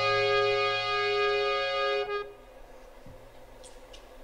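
A sustained chord on a keyboard instrument, held at a steady pitch and cutting off a little over two seconds in.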